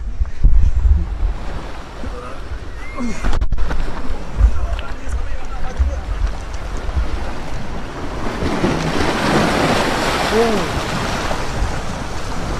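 Small waves washing onto a pebble shore, the wash swelling louder in the second half, with wind gusting on the microphone as low rumbles early on.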